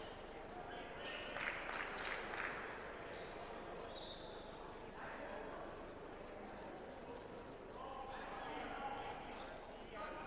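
Faint voices echoing in a gymnasium, with a few sharp basketball bounces on the hardwood floor.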